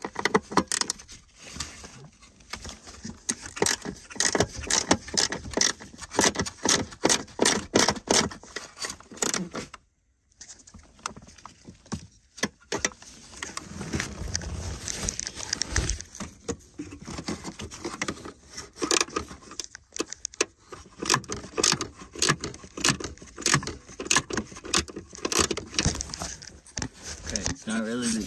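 Small ratchet with an extended 10 mm socket clicking in rapid runs while backing out the airbag controller's mounting bolts, with metallic rattling of the tool and bolts. The clicking breaks off briefly about ten seconds in, then resumes.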